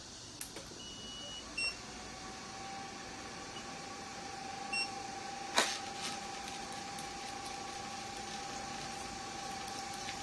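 Diode laser machine's steady electronic hum, a single tone that drops away and then builds back up in the first couple of seconds as the unit is switched back on. Short high electronic beeps come about a second in and again near five seconds, and a sharp click sounds just after five and a half seconds.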